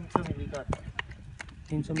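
A handful of sharp clicks and knocks at uneven spacing, about two to three a second, from a crimping tool worked on the metal connector of a high-voltage cable joint.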